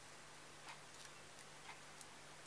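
Near silence with a few faint, irregular clicks as fingers bend the cut fringes of a thin plastic strip.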